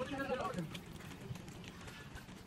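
A voice speaking briefly in the first half second, then quieter outdoor background with a few faint small knocks.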